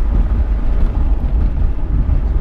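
Mitsubishi Lancer Evolution VIII heard from inside its cabin while being driven: a steady low rumble of engine and road noise.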